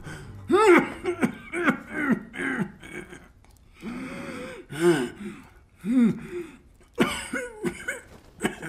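A man coughing hard in a long fit: a string of short, strained coughs, a rasping breath about four seconds in, then another burst of coughs near the end.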